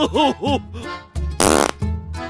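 Playful comedy background music with bouncing tones, and about a second and a half in, a loud, short fart sound effect.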